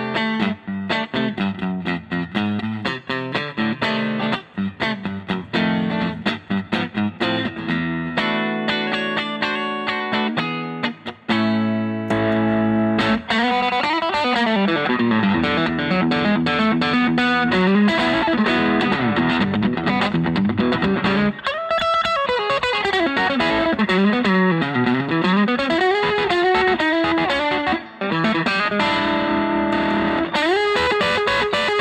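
Fender Custom Shop 1968 Stratocaster electric guitar on its middle pickup, a Fat '50s single-coil, played through an amp. Short, choppy chords and notes for the first twelve seconds or so, then sustained lead lines with wide string bends and vibrato.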